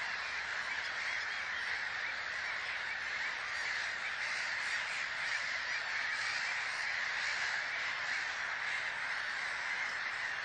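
A large flock of birds calling all at once, a dense unbroken chatter of many overlapping calls that holds steady throughout.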